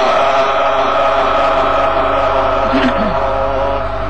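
A male qari's melodic Quran recitation, the voice holding one long drawn-out note that eases off slightly near the end, amplified through a microphone with a low electrical hum underneath.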